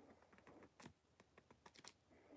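Near silence with faint, scattered short clicks, several coming close together in the second half.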